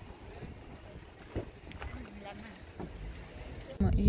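A low, steady rumble with faint, indistinct voices over it; a voice starts speaking loudly near the end.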